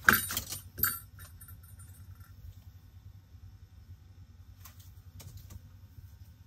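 Ice-fishing line and gear handled over the hole as a fish is pulled in by hand: sharp clicks and rattles in the first second, then a low steady hum with a few faint clicks near the end.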